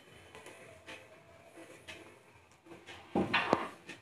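Wooden spatula stirring dry roasted thin poha flakes in a steel kadhai: faint rustling and light clicks, then a louder burst of scraping and clicks about three seconds in.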